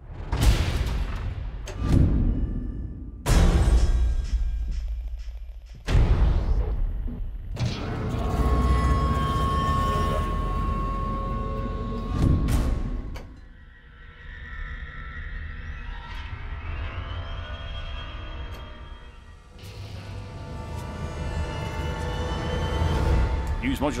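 Cinematic drone and riser sound-design samples from ProjectSAM's Orchestral Essentials, played from a keyboard. Several sudden deep hits with long rumbling tails come in the first six seconds. A sustained swell carrying a steady high tone follows and cuts off about thirteen seconds in, then quieter dark drones take over.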